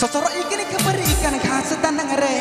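Santali DJ nonstop song music that changes abruptly at the start, with a falling pitch sweep about a second in.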